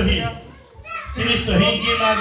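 Several people's voices talking and calling out loudly, with a drawn-out call in the second half.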